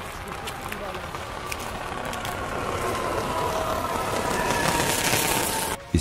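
Electric train at a station: a steady hum with a slowly falling whine and faint crackling, growing gradually louder. The crackling and hum come from the pantograph arcing on the frosted overhead catenary wire.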